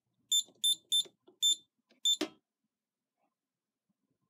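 Scantronic SC800 alarm keypad beeping once per key press: five short, high beeps at an uneven pace as the user code and the pound key are entered to reset the panel after an alarm. The keys make faint clicks, and a sharper click follows the last beep.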